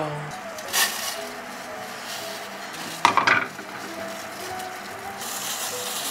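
Kitchen cooking sounds: a short sharp click about a second in, a louder clatter a little after halfway, then a steady hiss from a small steel pot of hot water where leaves are being blanched.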